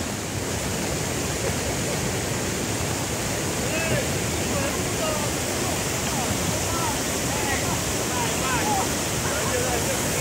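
Fast-flowing river water rushing steadily over stones, with faint distant voices calling from about four seconds in.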